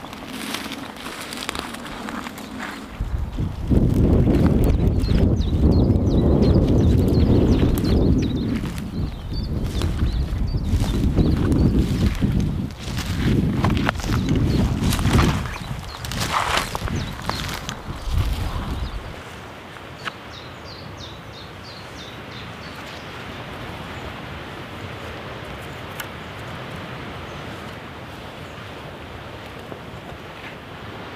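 Footsteps through long grass and scrub, with wind buffeting the microphone in heavy low rumbles through the first two-thirds. It then drops to a steady, quieter outdoor background.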